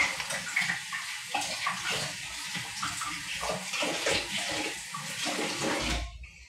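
Water running steadily from a kitchen tap, splashing irregularly into the sink, then shut off near the end.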